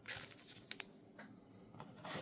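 Faint rustle of basketball trading cards being handled and flipped through by hand, with a couple of light clicks a little under a second in.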